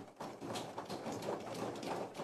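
Faint background noise of a large hall with a soft, irregular patter of light knocks.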